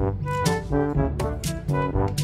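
Background music: a tune of short, separate notes over a regular beat.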